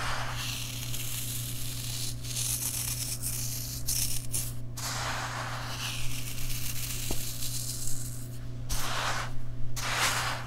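Fine sand trickling from fingers into a metal tin, a soft hiss that comes in several pours with short pauses between.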